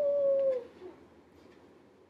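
A woman's wordless vocal sound: one held tone that falls slightly in pitch and lasts just over half a second at the start.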